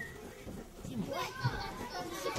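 Speech: an adult's voice and children's voices over the general noise of children playing in a hall.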